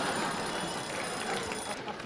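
Studio audience laughing at a joke, a steady wash of laughter that fades near the end.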